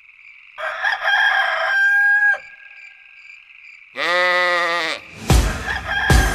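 A rooster crowing twice: a first call about half a second in that ends on a held note with a short drop, and a second, lower call at about four seconds. Just before the end a loud hit comes in, followed by music.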